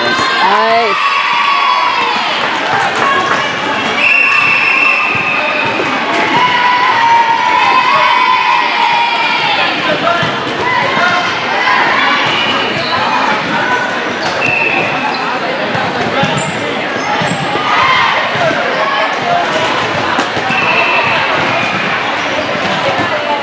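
Volleyball players and spectators shouting and calling out in a large, echoing sports hall, with the ball being hit and bouncing. A few brief high squeaks cut through the voices.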